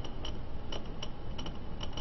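Faint ticks, three or four a second and unevenly spaced, over a steady background hiss.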